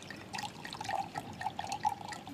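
A drink poured from a bottle into a glass, a gurgling run of glugs starting about a third of a second in.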